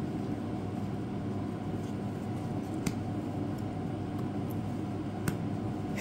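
Baseball trading cards being flipped through by hand: a few faint clicks of card stock, one about three seconds in and another near the end, over a steady low room hum.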